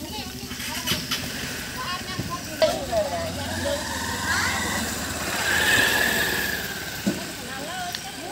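A small engine running steadily at idle, with people's voices in the background. A louder, wavering sound comes about halfway through.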